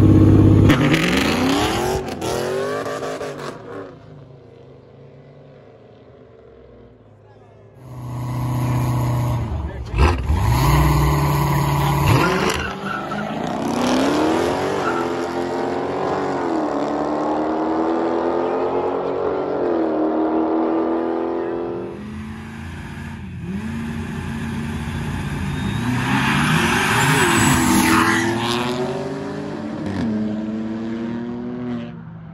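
Street drag-race launches: a cammed Camaro and a 5.0 F-150 V8 pull away hard, loud at first and fading off down the road. From about 8 s in, more cars accelerate hard, their engine pitch climbing and dropping back at each gear change, with a second build-up near the end.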